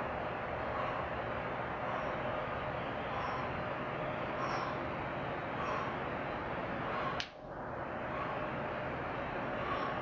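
A man breathing hard and rhythmically, about one breath a second, while straining through a slow rep on a weight machine, over a steady room hiss. One sharp click sounds about seven seconds in.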